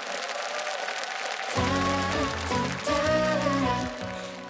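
Studio audience applauding, then about a second and a half in the instrumental introduction of a pop song starts, with sustained chords over a steady bass line and no singing yet.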